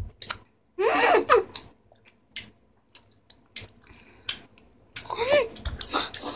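Wet mouth clicks and smacks of children chewing sour gumballs, with a short wordless moan about a second in and another near the end.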